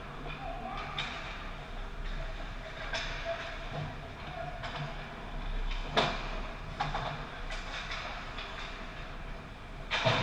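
Ice hockey play on a rink: skates scraping the ice and sharp clacks of sticks and puck, the loudest crack about six seconds in and another near the end, over a steady arena hum.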